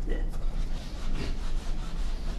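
Rubbing, scraping noise with faint speech behind it, over a steady low hum.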